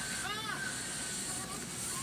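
Television audio picked up in the room: high-pitched shouted voices, one arching cry about a third of a second in and shorter calls later, over a steady hiss.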